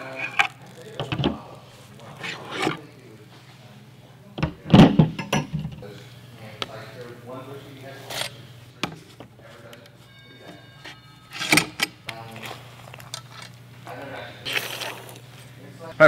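Scattered clinks and knocks of a metal rotisserie spit and its forks being handled on a wooden cutting board, the loudest about five seconds in, over a steady low hum.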